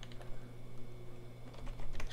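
Typing on a computer keyboard: a run of light, irregularly spaced key clicks.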